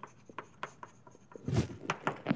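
Chalk writing on a blackboard: a run of short taps and scratchy strokes, with a louder thump about one and a half seconds in.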